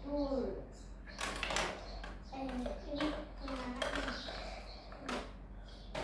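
A young child talking softly to herself while handling pieces of a plastic toy dollhouse, with light plastic clicks and knocks and one sharper click about five seconds in.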